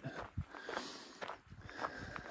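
A hiker's footsteps on a rocky dirt trail, several irregular steps at a walking pace.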